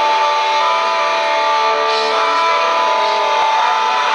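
Live rock band playing, electric guitar to the fore with long held, ringing notes. Loud and even, with almost no bass.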